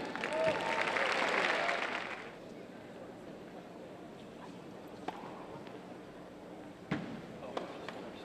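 Indoor arena crowd applauding and cheering for about two seconds, then dying away. Then the sharp pock of a racket striking a tennis ball on a serve about five seconds in, followed by louder ball strikes near the end of the rally.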